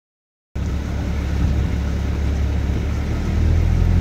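Steady low rumble of a motorized outrigger boat's (bangka's) engine running underway, starting about half a second in and growing slightly louder near the end, with water and wind noise above it.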